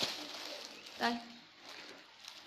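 Plastic clothing packaging rustling and crinkling as it is handled, opening with a sharp crackle, with one short spoken word about a second in.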